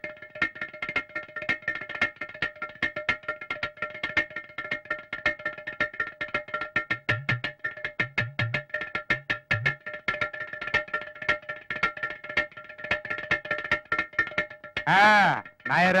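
Ghatam (clay pot drum) played fast with the fingers, a dense run of sharp strokes with a steady ringing tone underneath and a few deep bass thumps in the middle. A man cries out near the end.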